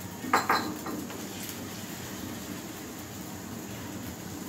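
Two quick clatters of kitchen utensils and dishes about half a second in, then a steady low background noise.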